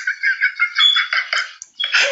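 High-pitched laughter in short, rapid pulses.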